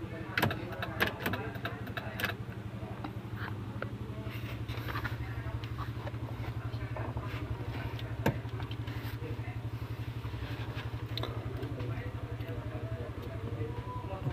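Suzuki APV engine idling steadily, with a few sharp clicks in the first couple of seconds and another about eight seconds in.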